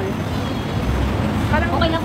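A low rumble in the background that swells about a second in, with women talking near the end.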